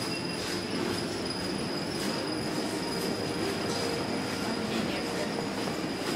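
Small hard wheels rolling steadily over a smooth tiled floor, a continuous rumbling noise with a faint, thin, high whine running through it.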